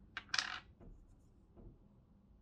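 A small makeup pot and its lid clinking as they are handled on a table: a click, then a short bright scraping rattle about half a second in, and two faint taps later.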